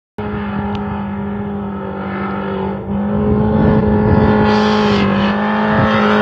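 Rally car engine held at high revs and steady pitch while the car slides through a dirt corner, getting louder about halfway through as it comes closer. A hiss of tyres throwing loose dirt joins it near the end.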